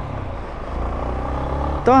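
Yamaha Lander 250's single-cylinder engine running steadily as the motorcycle rides along, heard as an even low rumble.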